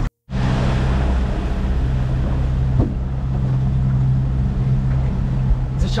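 Boat engine running steadily under way, a low even hum with rushing wind and water over it. It starts just after a brief moment of silence.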